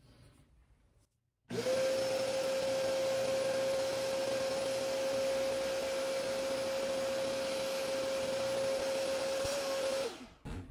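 Hoover Power Pet Dash Go portable spot cleaner switched on about a second and a half in, its motor running with a steady whine while it sprays cleaning solution onto a fabric cushion. It switches off at the end.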